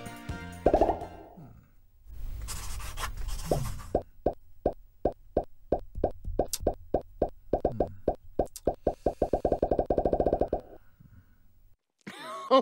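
Cartoon popping sound effects: a run of short, pitched plops, spaced out at first and then quickening into a rapid string that stops near the end, as figures pop into a thought bubble. One louder pop comes about a second in, and a hissy swish sounds a few seconds in.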